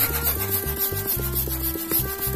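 Latex balloons being rubbed by hand against each other, over background music with a steady beat.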